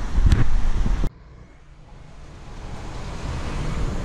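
Wind buffeting the microphone of a handheld camera, with two sharp clicks, cutting off suddenly about a second in to a faint hiss that slowly grows louder.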